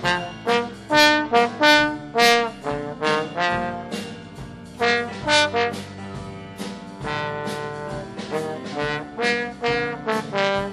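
Jazz trombone solo: a single line of short, separated notes with a longer held passage about two-thirds of the way through, over a quieter band accompaniment underneath.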